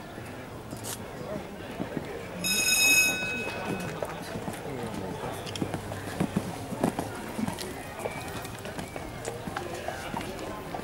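A horse moving on arena sand with soft hoofbeats under indistinct background voices; about two and a half seconds in, a steady electronic tone sounds for about a second and is the loudest thing heard.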